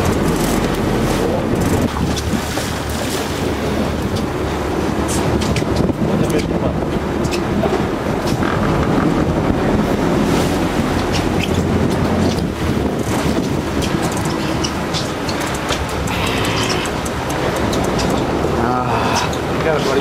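Wind buffeting the microphone over the steady running of a boat's engine and open-sea water rushing past the hull.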